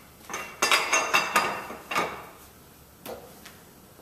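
Steel blocks and fixture parts being set down and shifted on a milling machine's metal table: a quick run of clanks with a metallic ring about a second in, then one more knock near the end.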